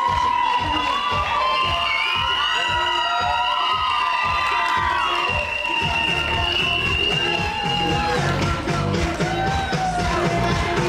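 Upbeat music with a steady beat over a crowd cheering, with high shouts and screams throughout.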